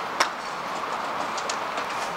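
A sharp click of a golf club striking a ball shortly after the start, then a few fainter clicks of other shots, over steady driving-range background noise.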